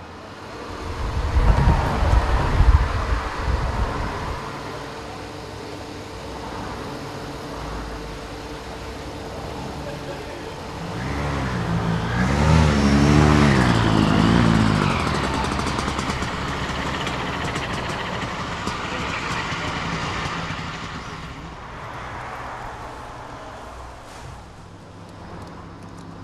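A vehicle engine running, its pitch wavering up and down for a few seconds about halfway through, over a steady mechanical background.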